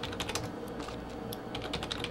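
Computer keyboard typing: quick runs of key clicks with a short pause midway, as stock codes are keyed in to call up the next chart.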